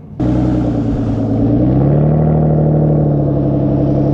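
Aston Martin DBS V12 exhaust running at a steady raised engine speed. It comes in abruptly, its pitch climbs slightly about a second and a half in, then holds steady.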